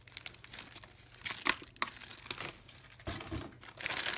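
Clear plastic packaging and plastic shopping bags crinkling and rustling as they are handled, in irregular crackles that are loudest about a second and a half in.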